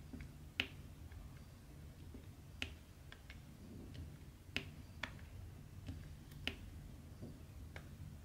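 Diamond-painting drill pen pressing round resin drills onto the sticky canvas and picking them from the tray: small sharp plastic clicks at an uneven pace, a loud click every second or two with fainter ticks between, over a low steady hum.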